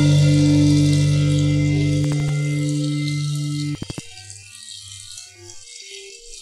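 A distorted electric guitar and bass chord from a hardcore-punk band, held and slowly fading. It cuts off abruptly with a few clicks about four seconds in, leaving only faint scattered sounds.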